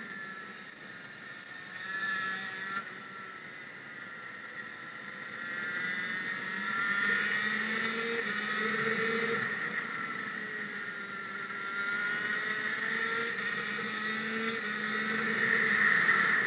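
Racing motorcycle engine heard from the rider's helmet. Its pitch climbs and falls repeatedly as it is accelerated and eased through the corners, and it is loudest near the end.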